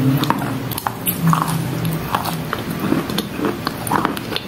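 Wet chalk being bitten and chewed close to the microphone: a string of short, sharp, moist crunches and clicks.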